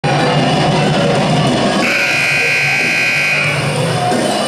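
Music playing over the gym's sound system, with a scoreboard horn sounding as one steady high tone for about a second and a half, starting a little under two seconds in.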